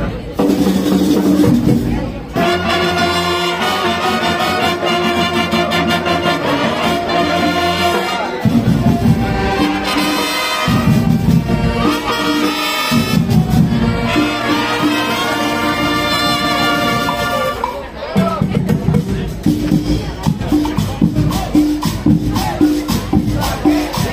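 Marching band playing a Latin-style number: brass sustaining chords over steady drums and shaker percussion. The brass drops back for a couple of seconds about a third of the way in, and after about 18 seconds the music turns to a choppier rhythm of short repeated low notes.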